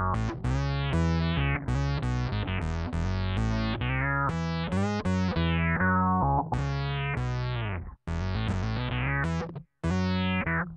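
Electric bass played on both pickups through a Digitech Bass Synth Wah envelope filter: a run of plucked notes, each opening bright and sweeping quickly downward, giving a synth-like funk tone. There are two short breaks in the playing near the end.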